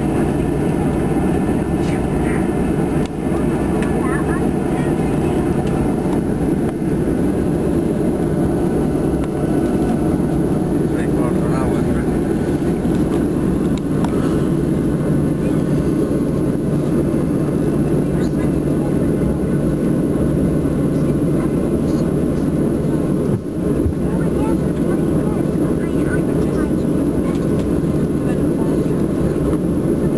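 Steady drone of an airliner's jet engines and cabin air heard inside the passenger cabin while the plane is on the ground, with faint background voices.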